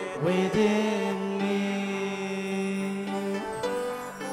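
A man singing a slow worship song into a microphone, sliding up into one long held note that lasts about three seconds.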